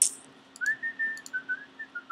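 A person whistling a few soft held notes, over a sharp click at the start and several lighter clicks from working a computer.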